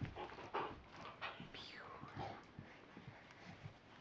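Puppy whimpering faintly and panting, with a short falling whine about a second and a half in and small knocks of play.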